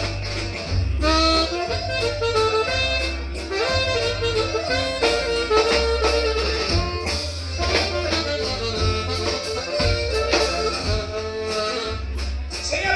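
Live norteño-style band playing an instrumental passage: a harmonica carries the melody in sustained notes over electric bass, guitar and drums, with a heavy steady bass line.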